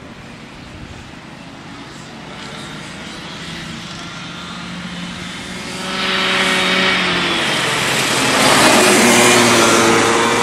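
Two Honda cadet karts with four-stroke engines running at speed, getting steadily louder as they approach, with a sharp rise about six seconds in and loudest over the last couple of seconds as they come close.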